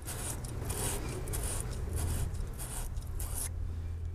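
Wire brush of a battery post cleaner twisted on a lead battery post, a rapid scratchy scraping of quick repeated strokes that stops about three and a half seconds in. It is scouring the corrosion off the post.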